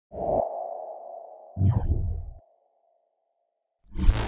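Intro sound effects for an animated logo: a low hit with a ringing tone that fades away over about three seconds, then a second low hit with a short falling sweep about a second and a half in. A loud whoosh begins right at the end.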